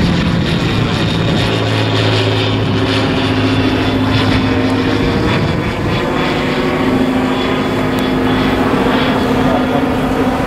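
Single-engine propeller light aircraft flying overhead: a steady engine and propeller drone whose tone shifts about halfway through.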